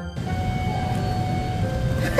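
Steady rumbling ambient noise, even throughout, with faint background music tones under it.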